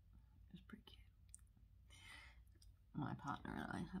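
Faint wet mouth clicks from sucking a hard candy and a short breath, then close, soft-spoken speech starting about three seconds in.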